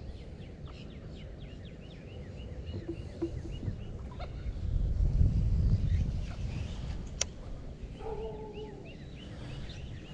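Birds calling from the marsh grass: a quick run of short, repeated high chirps, with more chirping near the end and a short lower call about eight seconds in. Wind rumbles on the microphone, swelling about halfway through, and a single sharp click comes about seven seconds in.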